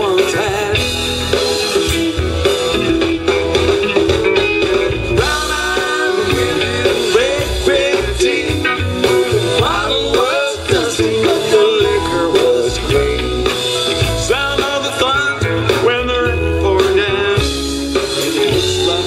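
Live rock band playing a blues-tinged song, with electric guitar lines bending and weaving over the band.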